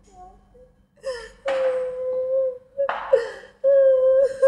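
A person crying loudly: long drawn-out wails broken by gasping, sobbing breaths.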